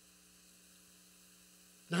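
Faint, steady electrical mains hum made of a few low, constant tones; a man's voice starts just at the end.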